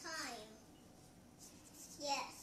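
A young child's short wordless vocal sound, sliding down in pitch, right at the start.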